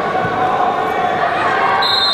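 Reverberant arena background of voices during a wrestling bout, with a dull thump of feet on the wrestling mat about a quarter second in. A high, steady tone begins near the end.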